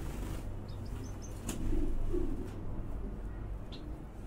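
Faint, short high bird chirps about a second in and again near the end, with a louder low call around two seconds in, over a steady low rumble.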